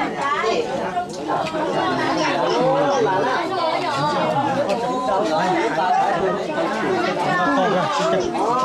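Several people talking at once: overlapping conversation and chatter around a table.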